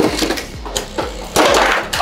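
Three Beyblade X spinning tops whirring and clashing in a clear plastic Wide Xtreme stadium, with sharp clacks as they collide. About a second and a half in comes a louder, dense burst of clattering as one top is knocked out for an Xtreme finish.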